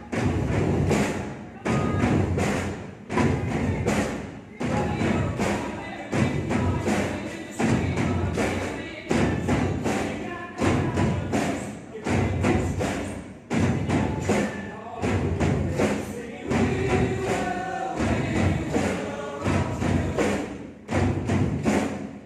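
Many drum kits played together in unison, with heavy accented hits about every second and a half, over music with singing in it.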